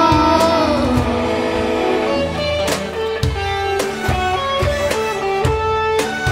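Live student ensemble of violins, guitars and percussion playing a song: a long held note fades about a second in, then the ensemble carries on instrumentally with guitar notes and a steady drum beat.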